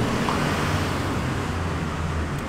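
Street traffic noise with a steady low engine hum.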